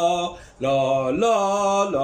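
A man singing a vocal exercise on the syllable "la": held notes that climb in pitch in steps, with a brief pause about half a second in.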